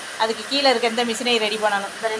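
A woman talking, with a faint steady hiss behind her voice.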